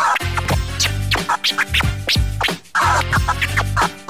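DJ scratching a record on a turntable-style deck over a hip-hop beat: quick back-and-forth strokes give rapid rising and falling pitch sweeps over a steady bass line.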